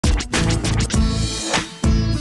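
Title theme music for a TV programme, with a quick run of short rhythmic stabs over steady low notes in the first second and a heavy low hit near the end.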